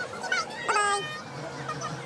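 A short, high-pitched yelp-like cry, falling slightly in pitch, about three-quarters of a second in, with a few smaller chirps just before it.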